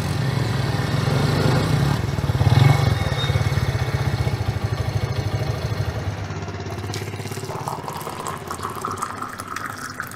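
A motor scooter's engine running and idling, loudest about three seconds in, then slowly growing quieter.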